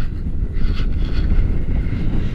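Airflow buffeting the microphone of a selfie-stick camera in paraglider flight: a steady, loud, low rumble.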